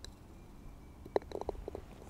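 Golf ball and putter on a green: a sharp click about a second in, followed by a quick run of small knocks, over a faint low rumble.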